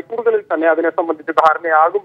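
Speech only: a news reader narrating in Malayalam.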